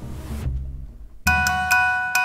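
Outro music: a brief hiss, then chiming bell-like notes that start a little over a second in and strike about twice a second.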